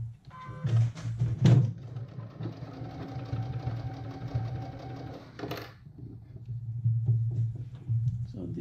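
Computerized sewing machine: a few clicks and short beeps as its buttons are pressed, then the machine runs steadily for about three seconds sewing a basting stitch and stops with a click.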